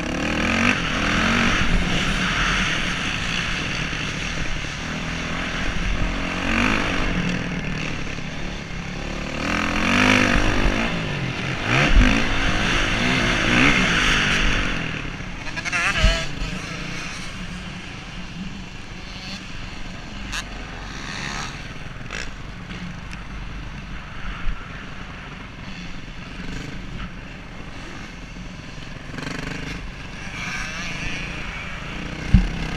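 Motocross dirt bike engine revving up and down as the rider accelerates and backs off through corners, picked up by a helmet camera with wind rushing over the microphone. Two sharp knocks stand out around twelve and sixteen seconds in, and the engine is quieter in the second half.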